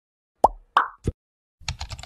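Intro sound effects: three quick pops about a third of a second apart, the first dropping sharply in pitch. They are followed by a half-second run of rapid clicks, like keyboard typing, as the channel name appears in the on-screen search bar.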